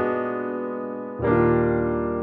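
Nord Stage 4 stage keyboard playing a piano-type preset: two chords struck about a second apart, each left to ring and slowly fade.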